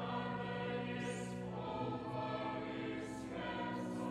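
A youth choir singing sustained chords that shift about halfway through, with a few soft sung 's' sounds, in a reverberant cathedral.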